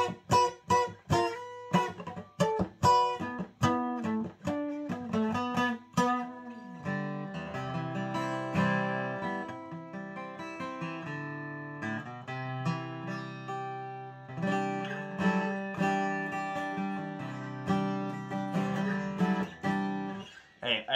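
Martin DC-35E cutaway dreadnought acoustic guitar with a spruce top being played: quick, crisp picked notes and strums for the first six seconds or so, then fuller chords left to ring, with more strumming near the end. It has a full bass with pronounced mids.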